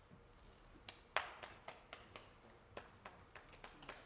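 Faint, irregular taps and clicks, a few each second, with one sharper knock just over a second in.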